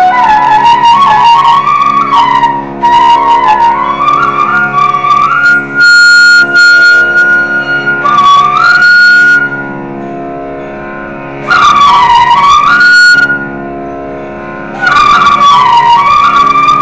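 Carnatic flute playing raga Malayamarutham over a steady drone, in gliding, ornamented phrases with a long held high note about six seconds in. The flute twice falls silent for about two seconds, leaving only the drone.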